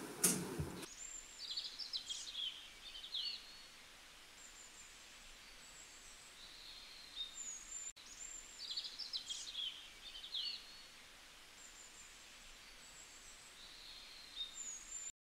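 Faint birdsong: quick high chirps and short trills, with the same burst of calls coming twice, about six seconds apart, over a low steady hiss.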